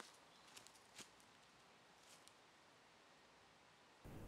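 Near silence, broken by a few faint, short clicks in the first half.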